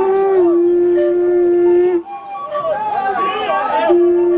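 Howl-like wailing voices: a long held note for about two seconds, then several voices sliding up and down together, with the held note returning near the end.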